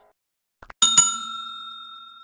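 Subscribe-button sound effect: two quick mouse clicks, then a bright bell ding struck twice in quick succession, ringing and fading over about a second and a half.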